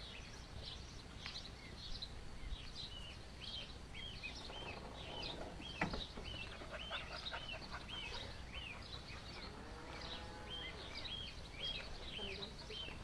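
Duckling peeping: a steady run of short, high peeps, two or three a second, with a single sharp knock about halfway.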